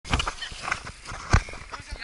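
Irregular knocks and rustles of a handheld camera being moved, the loudest about a second and a third in, over faint distant voices.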